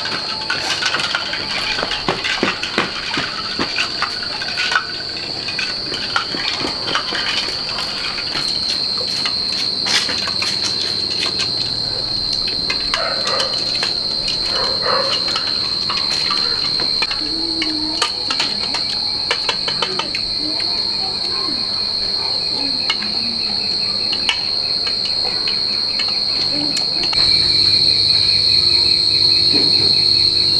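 Steady high-pitched drone of an insect chorus, with scattered clicks and knocks over it; the drone grows louder near the end.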